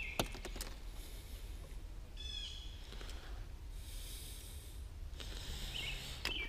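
Quiet outdoor ambience on a small fishing boat: a low steady rumble, a couple of small knocks near the start, a brief bird chirp about two seconds in and a soft hiss about four seconds in.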